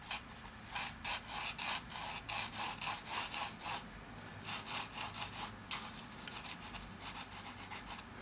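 Pencil drawing on paper: a run of short strokes, two or three a second, with a brief pause about four seconds in and quicker, fainter strokes near the end.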